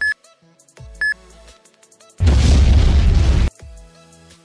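Countdown timer sound effect: two short high beeps a second apart over background music, then a loud boom about two seconds in that lasts just over a second.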